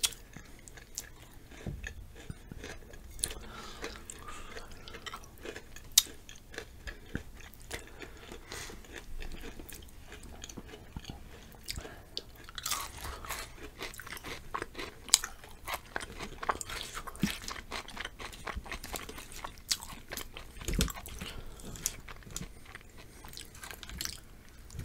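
Close-miked crunching and chewing of chocolate-covered potato chips, with sharp crunches that come thicker and faster from about halfway.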